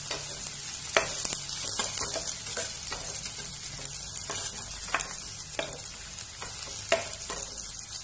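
Chopped garlic sizzling in hot oil in a frying pan while being stirred with a spatula, frying until golden brown. A steady high sizzle, with a few sharp clicks of the spatula against the pan; the loudest come about a second in and near the end.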